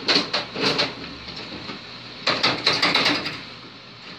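Carrom Super Stick dome hockey game in play: plastic players and steel rods clattering and clicking against the puck and the table, in two rapid bursts, one at the start and one about two seconds in.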